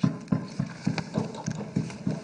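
Legislators thumping their wooden desks in applause, a rapid, irregular run of hollow knocks, about five a second.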